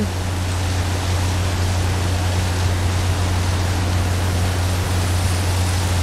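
Crushed dolomite stone pouring steadily off a conveyor belt onto a stockpile: a continuous rushing noise over a steady low hum.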